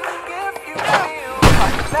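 Music with a wavering melody, cut by one loud smashing crash about one and a half seconds in as the alarm clock is knocked from the mantel and broken.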